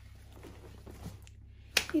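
Faint rustling and handling of a fabric-and-mesh beach tote as it is lowered and set down on a sofa, then a single sharp click near the end just before speech begins.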